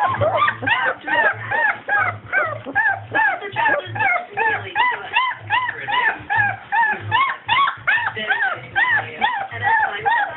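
Four-week-old basset hound puppy yelping and whimpering over and over, about three short cries a second, each rising and falling in pitch.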